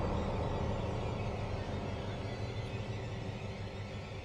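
Deep low rumble of a cinematic boom hit dying away, fading slowly and steadily.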